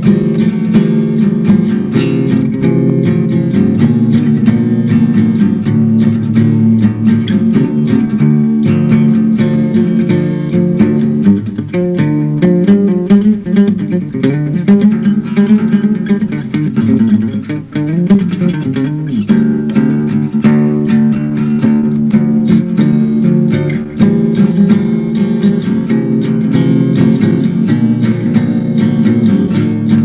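Solo acoustic guitar playing continuously, recorded on a tape recorder. The playing thins out and drops a little in level about twelve seconds in, then comes back full around nineteen seconds.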